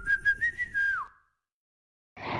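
A single whistle-like note closing the intro jingle: held with a slight rise, then gliding down and cutting off about a second in, followed by silence.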